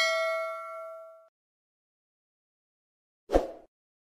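A single bell-like ding sound effect, struck just before the start, rings out for about a second and then cuts off. A short burst of noise with a low thump comes about three seconds later.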